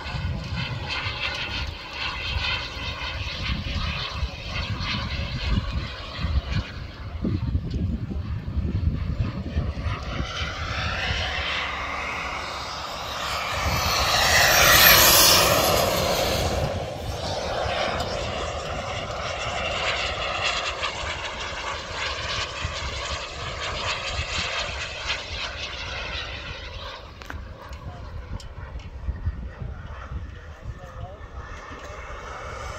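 Radio-controlled model jet flying overhead with a steady high-pitched whine. About halfway through it passes close, growing loudest around 15 seconds, and its pitch drops as it goes by.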